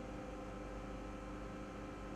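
A faint, steady electrical hum with a hiss beneath it, holding several fixed tones and no clicks.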